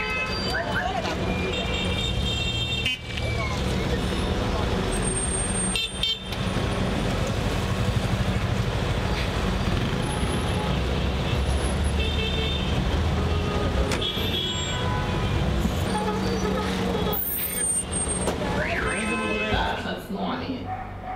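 Busy city street-market ambience: steady traffic noise with car horns tooting now and then and the voices of people around.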